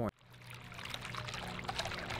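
Water splashing and trickling from a bubbler fountain in a glazed garden bowl. It fades in over about the first second and then holds steady.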